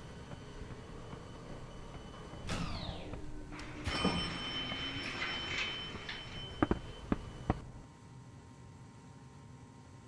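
Sounds in a stone-floored elevator lobby: a sliding, door-like sweep a few seconds in, then three sharp taps about two-thirds of the way through. After the taps the sound drops suddenly to a low, steady hush.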